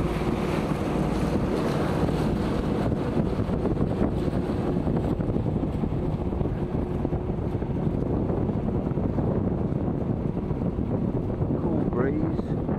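Wind noise on the microphone over the steady drone of a motor cruiser's engine and the rush of water past the hull, with the boat under way at sea.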